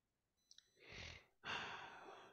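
Two soft breaths heard close to a microphone, the second one a longer sigh.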